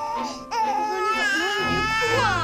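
Infant crying: a short cry, then a long wavering wail from about half a second in.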